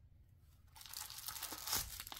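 A tiny cardboard doll shoe box being pried open by hand: paper and card rustling and tearing, starting about a second in and building, with a sharper crack near the end.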